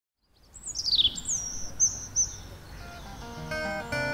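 Bird song: a few high whistled phrases, the first sliding steeply down in pitch, over a faint outdoor background. About two and a half seconds in, plucked acoustic guitar music fades in and builds.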